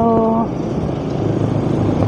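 Street traffic: a motor vehicle's engine running nearby as a steady low rumble that swells slightly about halfway through.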